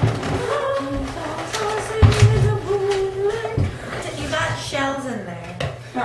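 A girl singing or humming in long, held, wavering notes, with a few knocks from handling things at the kitchen counter.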